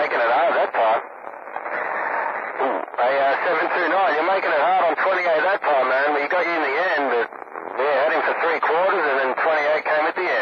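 Men's voices coming in over a two-way radio receiver, thin and band-limited, with a short stretch near the start where the audio is narrower and quieter, as a different station comes through.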